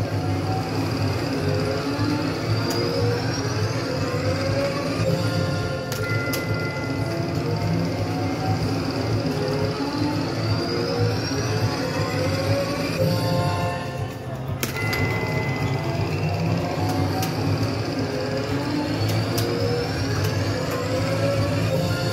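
Slot machine bonus-round music from an EGT Bell Link game, a steady looping tune with rising sweeps, broken by a sharp chime and a held bright tone about six seconds in and again about fifteen seconds in as the last two respins land. Neither respin adds a bell.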